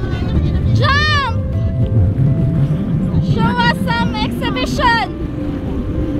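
Motorboat engine and water rumbling steadily under way at sea, with high-pitched voice-like calls over it: one long rising-then-falling call about a second in, then a run of short quick calls in the second half.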